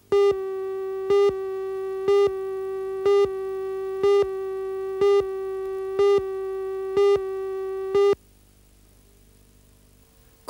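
Tape countdown leader: a steady electronic tone with a louder beep about once a second, nine beeps in all, cutting off suddenly about eight seconds in.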